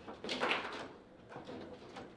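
Foosball table in play: a short rattle of the rods and ball about half a second in, then lighter knocks and rod slides.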